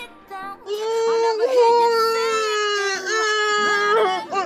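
A voice singing one long, high held note for a little over two seconds, then a shorter second note just before the end.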